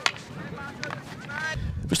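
Field hockey stick striking the ball with a sharp crack right at the start and a lighter click about a second later, with young players' high-pitched calls in the background.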